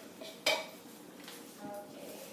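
A hard object knocks once against a clear glass dish: a sharp clink with a brief ring about half a second in.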